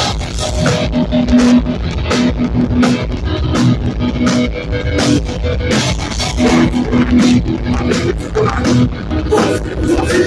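Hardcore band playing loud live: distorted electric guitars repeating a riff over a drum kit.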